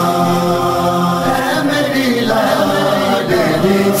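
Male noha khwan chanting a Shia lament (noha), singing long held notes that bend and fall in pitch.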